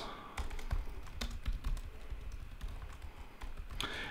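Typing on a computer keyboard: a run of soft, irregular key clicks.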